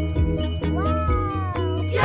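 Background music with a steady beat of short plucked-sounding notes over a bass line. About halfway in, a pitched sound rises and then slowly falls for about a second over the music.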